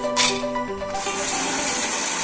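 Background music, then from about a second in an electric mixer grinder (mixie) running steadily, grinding Marie biscuits into powder.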